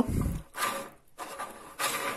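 Square wooden sticks of a cross puzzle rubbing and sliding against each other and the tabletop as they are handled, with a brief pause about a second in.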